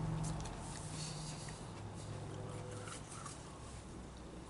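Quiet chewing of a superhot Fatalii Jigsaw pepper pod: a few faint mouth clicks over a low, steady hum that slowly fades.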